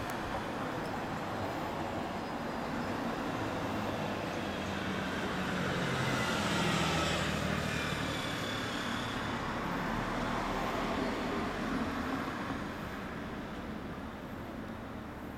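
Road traffic passing a roadside forecourt: a vehicle's noise swells to a peak about seven seconds in and fades away, over a steady background of traffic.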